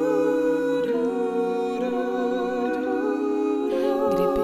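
An a cappella vocal group sings wordless sustained chords in close harmony. The chord changes about a second in and again near the end.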